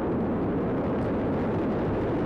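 Falcon 9 rocket's first stage, with its nine Merlin engines, running during ascent just after clearing the launch tower: a steady, deep rumble.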